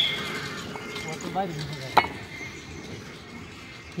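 Fired clay bricks being set down by hand onto a stack: a short ringing clink at the start and a sharp knock of brick on brick about two seconds in.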